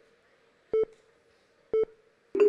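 Quiz-show countdown timer beeping: short, identical electronic beeps about once a second over a faint steady tone, marking the last seconds of the contestants' thinking time.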